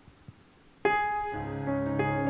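Keyboard accompaniment starting about a second in after near quiet: a sharp piano-like note, then a sustained chord with bass notes held under it, the instrumental intro for a singer.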